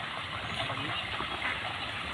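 Steady, low background hum with no distinct events.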